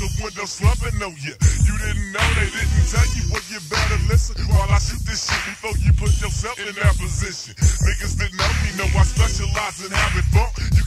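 Slowed-down, 'screwed' hip hop, with a rapped vocal over heavy bass.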